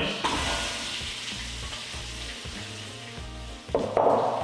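Sliced red onions tipped into a pot of hot coconut oil, hitting the oil with a sizzle that slowly settles into steady frying. The sizzle swells briefly again near the end.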